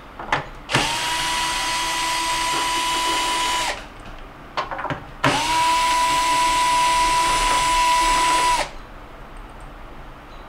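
Cordless drill with a quarter-inch nut driver bit backing out the screws that hold a refrigerator freezer basket's slide rails. It runs in two bursts of about three seconds each: the motor spins up to a steady whine and stops sharply. There are a few small clicks between the bursts.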